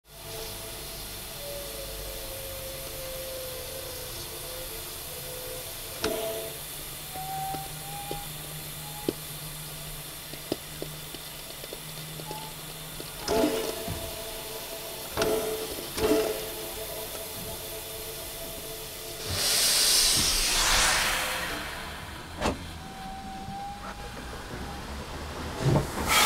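Steam locomotive standing and idling: a steady hiss of steam with faint steady hums, a few sharp metallic clanks, and a loud burst of venting steam about twenty seconds in.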